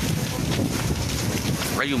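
Steady rushing noise with a heavy low rumble: wind buffeting the microphone, mixed with the sound of a house fire burning fully.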